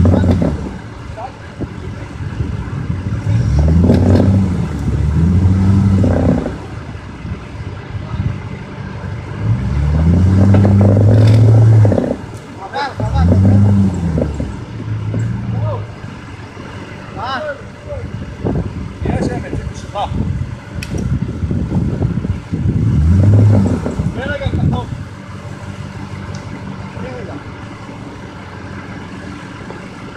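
Off-road 4x4 engine revved hard in about five separate bursts, each climbing and falling back, as it strains to free a Jeep Grand Cherokee stuck on its axle on rocks.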